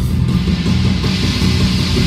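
Live rock band playing in a concert hall, recorded from the audience. Drums and bass keep up a steady, loud backing under a wash of cymbals, while the lead electric guitar's held notes drop away for a moment.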